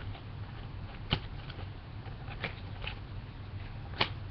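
A few soft clicks and taps from a handmade duct tape wallet being handled, the sharpest about a second in, over a steady low hum.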